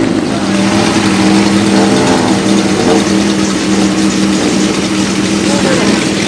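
Four-cylinder Honda motorcycle engine idling steadily at an even pitch, with people talking nearby.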